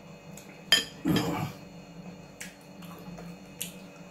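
A metal spoon clinks sharply against a glass bowl of soup under a second in, followed at once by a short slurp of broth from the spoon. A couple of lighter cutlery clinks come later.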